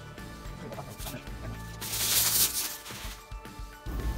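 A paper instruction sheet rustling briefly about halfway through, over faint background music.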